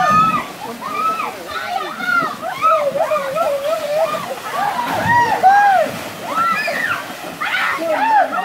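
A group of bathers shouting and whooping in high voices, with water splashing and sloshing in a rocky pool as someone jumps in about five seconds in.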